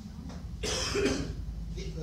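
A person coughs once, sharply, about halfway through, over a low steady hum.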